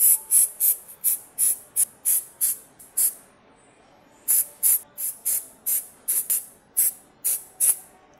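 Finger-pump spray bottle squirting cleaner in short hissing bursts, about three a second, with a pause of about a second near the middle.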